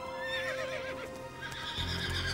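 A horse whinnying, a high wavering call of about a second just after the start, over soft background music. It is the call of a brumby, a wild horse, announcing itself.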